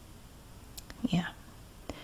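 A soft-spoken woman's voice says "yeah" once, about a second in; otherwise only quiet room tone with a couple of faint clicks.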